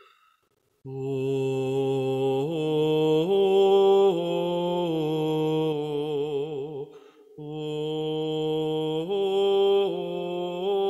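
A slow Taizé chant sung in long, held notes with vibrato that step up and down in pitch. It is broken by short pauses for breath: one just before the first second and another around seven seconds in.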